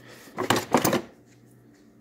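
A metal HVLP spray gun clatters against its moulded plastic kit case as it is lifted out: a quick run of knocks and clicks lasting about half a second, starting about half a second in.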